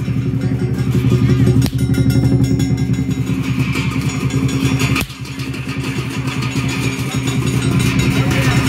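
Lion dance percussion: a big drum beating a fast, dense roll with clashing cymbals over it. The level drops briefly about five seconds in, then builds again.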